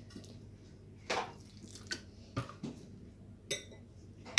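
Liquid poured from a plastic bottle onto chopped orange peel in a glass bowl: a few faint, short splashes and drips spaced out over the pour.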